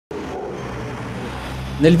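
Cars driving past on a street, giving steady engine and tyre noise.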